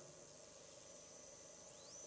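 Faint room tone: a low, steady hiss with no distinct sound.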